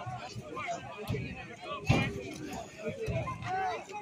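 Spectators' voices chattering and calling out over one another, with one sharper, louder sound about two seconds in.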